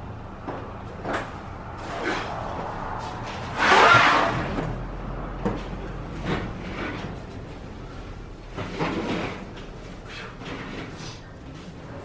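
Boxes and engine parts being handled on a garage floor and work table: a string of irregular knocks, rustles and scrapes, with one louder thud about four seconds in.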